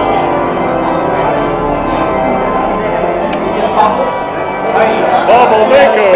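Church bells ringing, a steady wash of overlapping tones, with a crowd's voices rising over them near the end.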